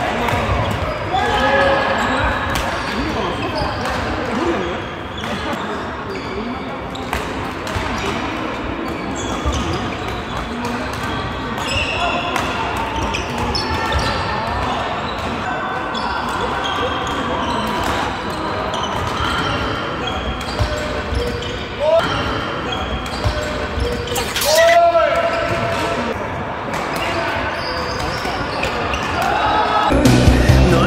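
Badminton doubles rallies in a large, echoing sports hall: repeated sharp racket strikes on the shuttlecock and brief shoe squeaks on the wooden court floor, over the voices of players across many courts.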